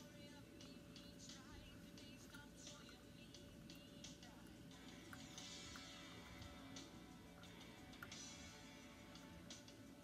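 Near silence: a faint steady hum with a few faint light ticks, as fly-tying thread is wrapped around bead-chain eyes on a hook in the vise.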